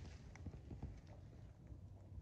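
Faint footsteps on dry fallen leaves: a few soft crunches and knocks in the first second, fewer after as the walker comes to a stop.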